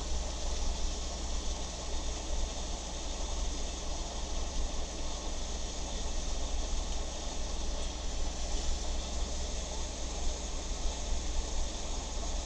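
Steady low hum and hiss, with faint irregular scratching of a Hunt School dip pen nib dragging across paper as it inks lines. The nib is catching and nipping the paper fibres as it goes.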